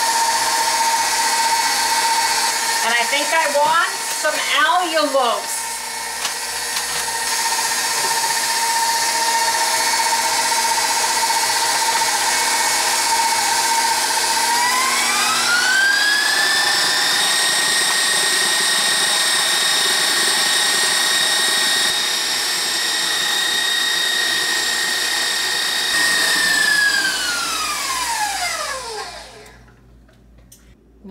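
KitchenAid stand mixer motor running steadily with its wire whisk whipping egg whites. About halfway through it is turned up to a higher speed and the whine rises in pitch. Near the end it is switched off and the whine falls away to a stop.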